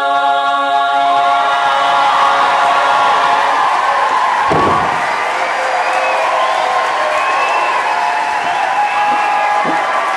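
A youth barbershop chorus's final a cappella chord ends within the first second, and the audience breaks into steady applause and cheering.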